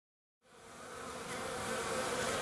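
Minnesota Hygienic honey bees buzzing at a hive entrance, a steady hum that fades in about half a second in and grows louder.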